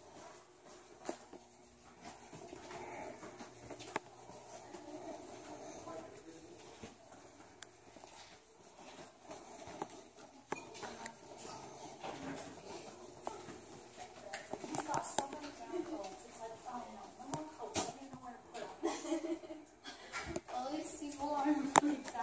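Indistinct voices of people talking at a distance, too faint to make out at first and growing louder and clearer over the last several seconds. A few sharp clicks are scattered through it.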